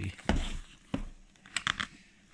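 Zip on a toughened hard-shell carry case being pulled open and the lid lifted: a few sharp clicks and short rustles, busiest near the end.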